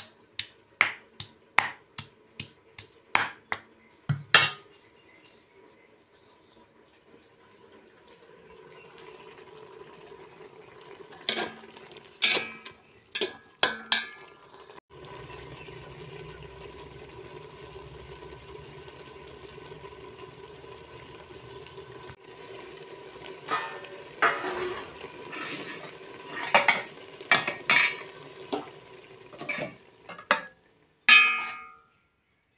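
A stone pestle strikes garlic in a stone mortar about twice a second for the first few seconds. Later comes a steady hiss of a pot of gravy cooking, with a metal slotted spoon knocking and scraping against the metal pot.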